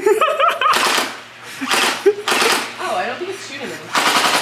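Electric toy blaster firing on automatic in three short rattling bursts, mixed with voices and laughter.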